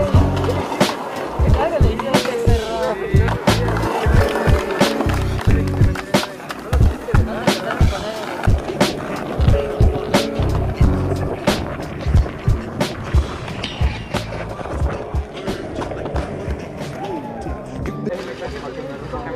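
Skateboard wheels rolling on concrete, with repeated sharp clacks of the board popping and landing tricks, under a background music track with vocals.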